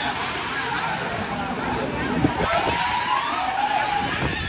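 Wave-pool water sloshing and splashing against people sitting in the shallows, over a crowd's voices, with a long gliding shout in the last second and a half.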